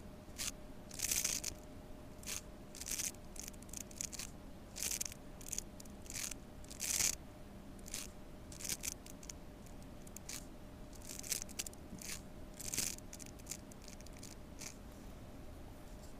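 Chinese painting brush stroking and dabbing colour onto paper: a string of short, irregular scratchy strokes, one or two a second, dying away a couple of seconds before the end, over a faint steady hum.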